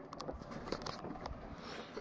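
Faint handling noise of a handheld camera being moved: light rustling with a few small scattered clicks.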